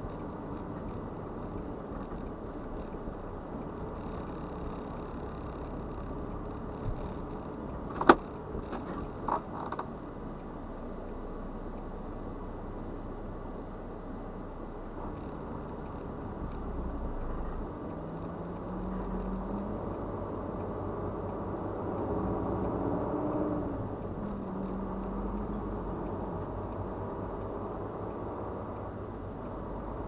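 Semi truck's diesel engine heard from inside the cab, idling steadily, with one sharp click about eight seconds in and a few smaller knocks just after. In the second half the engine pulls harder and its pitch rises twice as the truck gets rolling.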